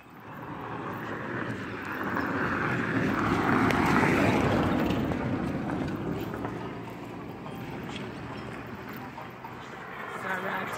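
A vehicle passing by on the road, its noise building to loudest about four seconds in and then fading away.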